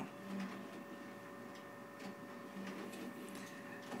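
Quiet room tone: a faint steady electrical hum with a thin high whine, and no distinct event.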